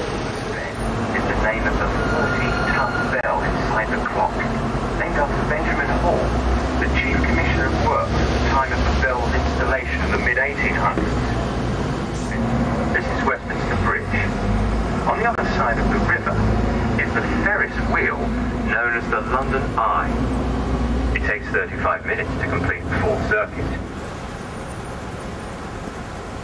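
Ride on the open top deck of a double-decker bus: a steady low rumble of the bus and road under indistinct voices, the rumble dropping away about 21 seconds in.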